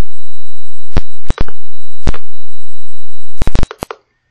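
Simulated pedestrian-crossing sounder from a PIC16F648A traffic light controller circuit simulation, played through the computer's audio as a loud, steady, high-pitched beep. It signals that it is safe to cross. The tone is broken by sharp clicks about once a second and cuts off shortly before the end.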